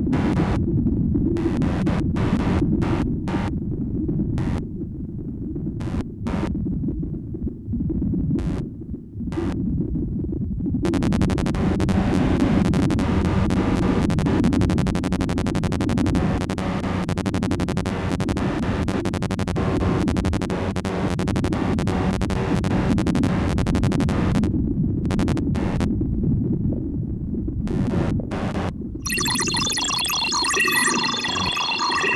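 Make Noise modular synthesizer (Tape and Microsound Machine with Strega) playing electronic noise music: a dense low drone broken by irregular clicks and glitches. From about eleven seconds in it becomes a fast, continuous stream of stuttering clicks for over ten seconds, then thins out again. Bright pitched tones come in near the end.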